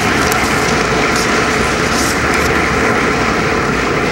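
Audience applauding steadily after a poem ends.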